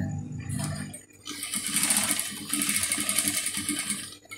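Industrial sewing machine running as it stitches a patch pocket onto fabric. It starts about a second in, runs at a fast, even stitch rate with a brief hitch in the middle, and stops just before the end.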